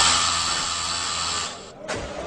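Shower head bursting on with a loud, steady spray of water that stops after about a second and a half, followed by a brief second burst near the end.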